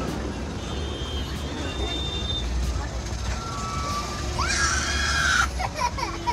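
Small children crying and wailing inside a moving bus, over the low rumble of the bus. One loud, high scream comes about four and a half seconds in.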